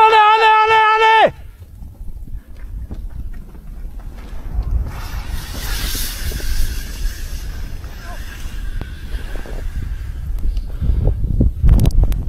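A long shouted "Hey!" of warning, cut off after about a second. Then the low, noisy rush of an avalanche coming down the couloir builds, and its powder-cloud blast buffets the microphone hardest near the end.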